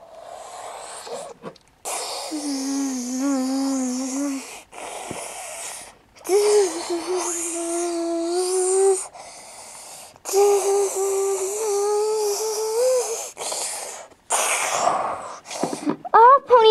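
A child's voice making long, airy held notes instead of words, three sustained tones of a few seconds each, with hissy breath between and over them; the last note rises slightly at its end.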